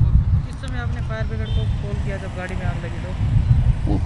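Steady low rumble of road traffic under quieter voices talking.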